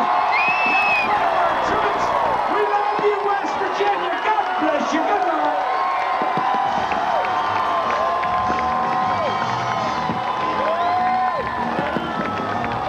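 Large concert crowd cheering and whooping, many voices calling out over one another.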